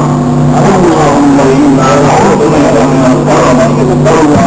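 A crowd reciting a prayer chant together, many voices overlapping in a loud, continuous drone with a steady low hum underneath.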